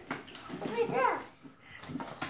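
A young child's high-pitched voice: one short sound that rises and then falls in pitch, about a second long, in the middle.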